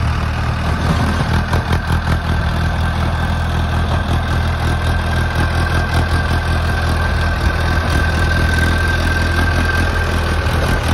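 Mahindra Arjun tractor's diesel engine running steadily as the tractor works a rotavator through weeds and soil, with a steady high whine that grows stronger in the second half.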